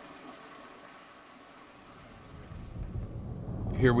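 A faint hiss, then from about two and a half seconds in a low rumble of a moving vehicle's road noise builds up. A man's voice starts at the very end.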